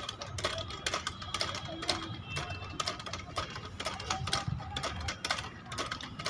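Outdoor gym elliptical cross-trainer clicking and knocking at its metal pivots as a child pumps the pedals and handles, a quick irregular run of clicks.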